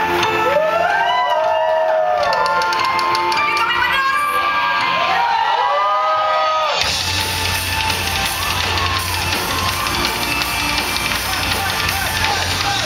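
Symphonic metal band playing live: a melodic opening of gliding, arching notes without drums, then drums and guitars come in at full band about seven seconds in.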